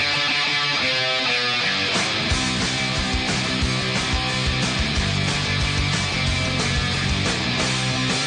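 Instrumental opening of a rock song, with electric guitars playing and drums coming in about two seconds in.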